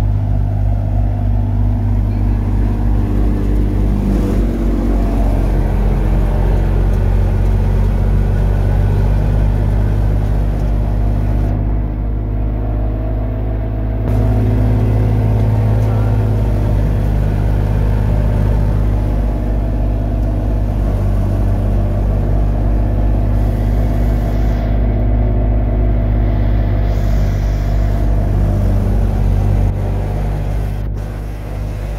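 Wheat thresher running steadily under load: a continuous, even mechanical drone with a deep hum.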